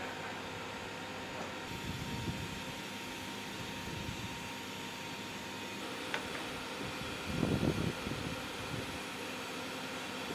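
Steady mechanical hum like a ventilation fan, with a few faint steady tones in it. A brief low rumble comes about seven and a half seconds in.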